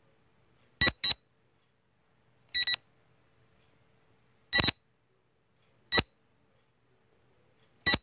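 Quiz countdown-timer sound effect: five short, high-pitched beeps, about one every one and a half to two seconds, the first three each doubled, ticking off the answer time.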